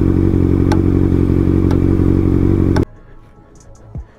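Sport motorcycle engine idling steadily at a standstill at a red light. It cuts off abruptly about three-quarters of the way through, leaving only a quiet outdoor background.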